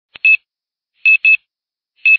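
Short electronic beeps, all at the same high pitch: a single beep with a faint click just before it, then two in quick succession about a second in.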